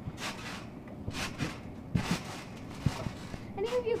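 Someone bouncing on a trampoline: a series of short landings on the mat, two of them sharper thumps about a second apart midway. A voice starts near the end.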